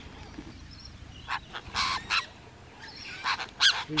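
Rainbow lorikeets giving short, high calls, about four of them after a quieter first second.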